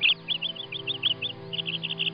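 Rapid series of high bird chirps, about eight a second, with a short break about halfway through, layered over steady background music.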